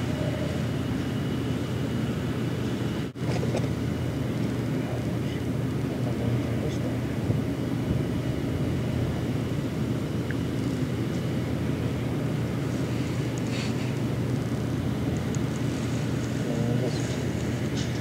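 Steady low mechanical hum over a rumble of background noise, with a few faint clicks and a brief cutout about three seconds in.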